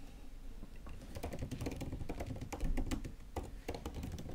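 Typing on a computer keyboard: an irregular run of key clicks as a terminal command is typed.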